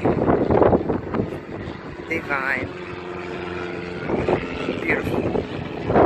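People's voices talking, with a steady pitched hum held for about two seconds in the middle.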